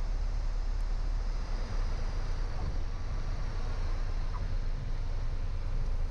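Cabin noise of a Piper Cherokee 180: the four-cylinder Lycoming engine running at low power with a steady rush of airflow, as the plane slows over the runway.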